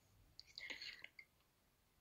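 Near silence, with faint whispering from a person's voice for about half a second, shortly after the start.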